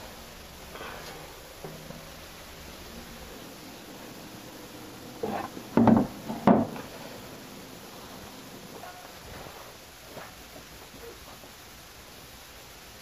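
Wooden dorm-room furniture being handled: a quick cluster of three or four sharp wooden knocks about halfway through, over a quiet room with faint rustling.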